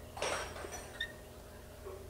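Okamoto ACC-1224-DX surface grinder's saddle being moved by hand on its ways with the manual cross-feed. It gives a short soft rush of noise near the start, then a click with a brief faint chirp about a second in.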